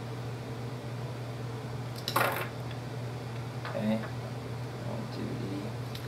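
A single brief metallic clink about two seconds in, from small metal parts knocking together during hand soldering of wires onto a potentiometer, over a steady low electrical hum.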